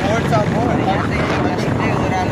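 Wind rushing over the microphone of a moving motorbike, mixed with the bike's running and road noise. Short rising and falling whistle-like tones sound over it throughout.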